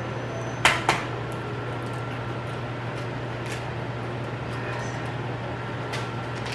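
An egg knocked twice against the rim of a bowl to crack it, two sharp taps about a quarter-second apart, followed by a steady low hum of room noise.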